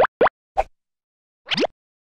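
Cartoon pop sound effects: short upward-sliding bloops, two quick ones at the start, a brief one about half a second in, and a longer rising one about a second and a half in, then silence.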